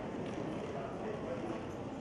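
Indistinct voices in a large hall: a steady murmur of overlapping talk with no single clear speaker.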